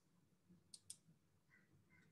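Near silence broken by two faint computer mouse clicks in quick succession, a little before one second in.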